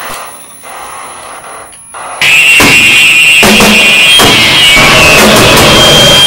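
Harsh noise music. A sparse, quieter stretch with a thin, steady high whine cuts suddenly, about two seconds in, to a loud, dense wall of distorted noise.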